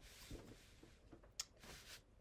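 Near silence: a faint rustle of sublimation transfer paper under hands smoothing it flat, with one light tap about one and a half seconds in.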